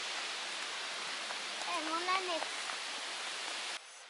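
Steady rushing of flowing water, an even hiss that cuts off suddenly near the end.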